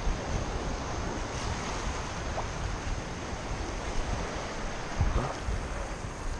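Steady wash of small sea waves in shallow surf, with wind rumbling on the microphone and a brief gust about five seconds in.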